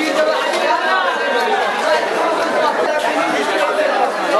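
Many people talking at once: the steady, overlapping chatter of buyers and sellers in a crowded covered fish market, echoing a little in the hall.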